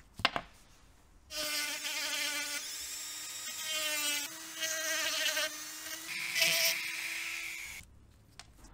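A sharp click a quarter second in, then a small hand-held rotary tool runs for about six and a half seconds with a steady whine. The whine wavers and dips in pitch as the fine bit cuts into the metal can of an old ignition capacitor, hollowing out the housing for a new capacitor.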